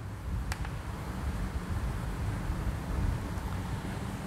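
Steady low rumble of background noise, with one sharp click of chalk on the blackboard about half a second in.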